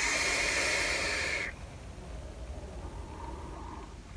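A long drag on a vape, a Pulse mod with an Athena atomizer: a steady hiss of air drawn through the firing coil that cuts off suddenly about a second and a half in, followed by a softer breathy exhale of the vapour.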